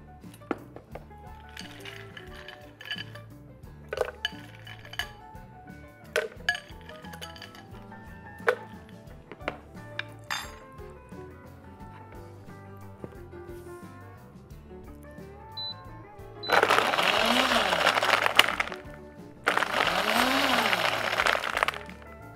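Ice cubes clinking into a blender jar, one by one, then an electric countertop blender run twice in bursts of about two seconds, blending ice into a liquid drink. Each burst's motor pitch rises and falls. The blender is the loudest sound.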